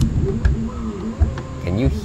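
Anet ET4 3D printer's print bed pushed back and forth by hand on its rollers, giving an uneven, clunky roller sound with a few knocks. The rollers are too tight and need loosening.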